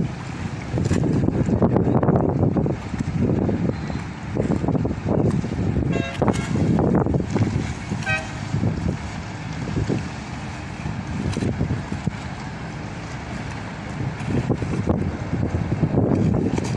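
Wind gusting on the microphone over the low rumble of a small passenger boat's engine and the water. Two short toots sound about six and eight seconds in.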